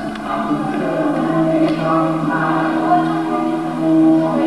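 Choral music: several voices singing together in long held notes, shifting slowly from chord to chord.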